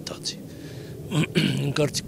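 A man's voice speaking into a microphone, with short pauses.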